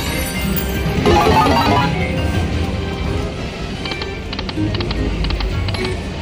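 Video slot machine game sounds from an Egyptian Jewels slot: a short electronic melody about a second in, then a run of quick ticks in the second half as the reels spin and stop, over a steady low background.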